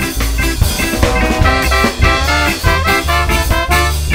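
A live ska band plays: a horn section of trumpet, trombone and saxophone blowing short rhythmic riffs over a steady bass line, drum kit and guitar.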